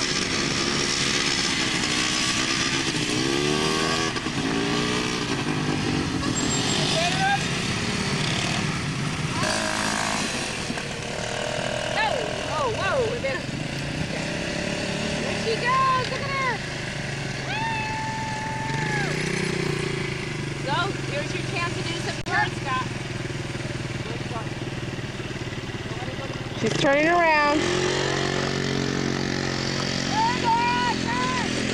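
Small youth quad ATV engines running on sand, their revs rising and falling as the riders throttle, with a sharp rev-up near the end.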